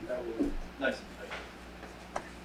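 Faint, indistinct speech in a small room: a few quiet murmured syllables.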